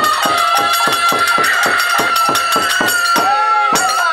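Bengali naam kirtan: a woman singing one long, high held note that wavers near the end, over harmonium, with a fast, even beat on khol barrel drums whose strokes swoop down in pitch.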